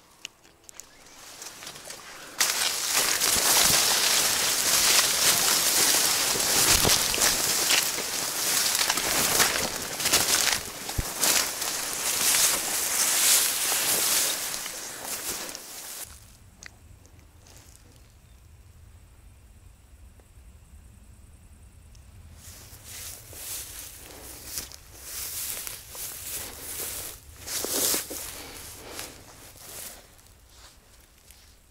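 Tall grass and reeds rustling and swishing as a person pushes through them on foot, loud for about fourteen seconds, then a quieter stretch with a low hum, then more bursts of rustling near the end.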